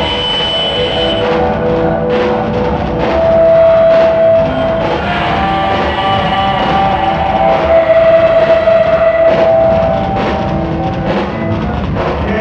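Punk rock band playing live: electric guitars and a drum kit in an instrumental passage, with no singing. The guitar holds long sustained notes, one a few seconds in and another in the second half, over steady drumming.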